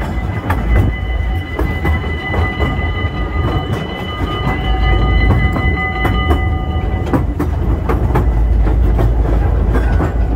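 Narrow-gauge steam train running with passengers, heard from an open carriage: a steady low rumble with wheels clicking over the rail joints. A set of high steady tones sounds over it until about seven seconds in, then stops.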